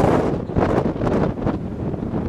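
Strong wind buffeting the camera microphone: a loud, gusting rumble that swells and dips unevenly.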